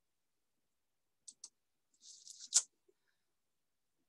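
A few faint clicks: two light ones, then a brief soft hiss ending in a sharper click.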